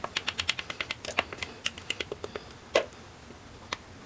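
Clear melted glycerin soap poured from a plastic measuring cup into a silicone loaf mold: a quick run of small sharp clicks and ticks that thins out after about a second and a half, followed by two louder single ticks.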